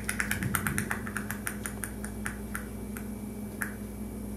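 A scattered run of light, sharp clicks, several a second at first and thinning out later, over a low steady hum.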